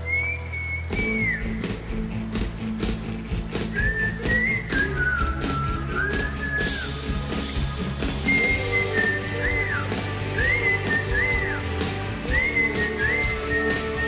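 A whistled melody, held notes that slide and fall away at their ends, over a rock backing track. The drums and bass come in about a second in and keep a steady beat.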